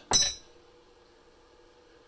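A single sharp clink with a brief high ring, just after the start, then the faint steady hum of the Breville air fryer oven running.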